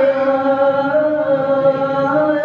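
A man's voice chanting the adzan, the Islamic call to prayer, into a handheld microphone. He holds one long drawn-out note that lifts slightly in pitch near the end.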